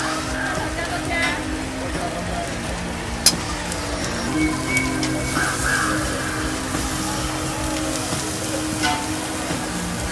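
Busy street-market background: voices over a steady low hum, with a single sharp click about three seconds in.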